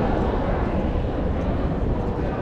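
Steady low rumble of city street noise, with no single event standing out.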